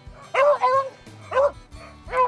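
Hunting beagle barking twice, a longer drawn-out bark about half a second in and a short one about a second and a half in, over background music.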